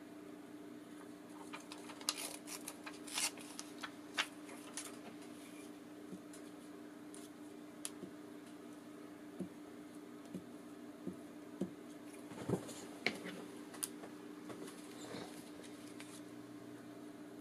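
Sheets of vellum and paper handled on a table: soft rustles, light crinkles and small taps, coming in a run a few seconds in and again near the end. A faint steady hum runs underneath.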